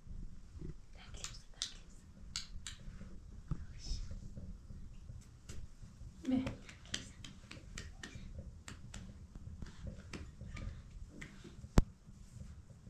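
Soft voices and small taps and clicks in a small room, with a brief voice about six seconds in and a single sharp hand clap near the end.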